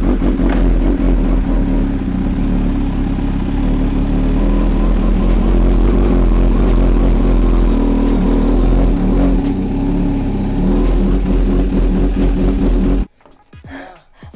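Kawasaki Ninja H2's supercharged inline-four engine running loudly at low revs as the bike is ridden up a ramp, with small shifts in pitch. It cuts off abruptly near the end.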